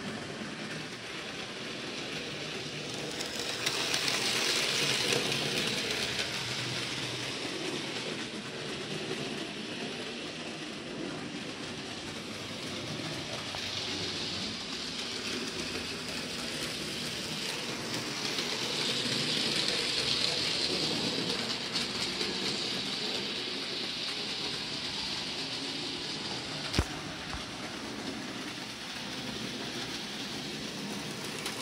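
Electric model railway locomotive with coaches running on the layout track: a steady whirring rattle of motor and wheels that swells louder twice as the train passes close. A single sharp click sounds near the end.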